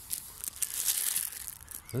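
Plastic bread bag crinkling and rustling as it is handled close to the microphone, a dense run of small crackles.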